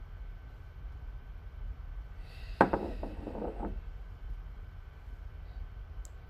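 Quiet room with a steady low hum. About halfway through comes a short breathy sound, then a brief low murmur of a man's voice, as a taster noses a glass of whiskey.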